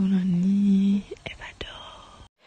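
A woman's voice holding one steady, wordless note for about a second, followed by a few faint clicks and soft breath sounds.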